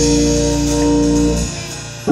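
Gospel church organ holding a sustained chord over a deep bass note, which thins out about one and a half seconds in before the next chord.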